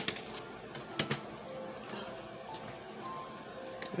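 Faint background music with a few light clicks and taps of tarot cards being handled and shuffled, the clearest about a second in.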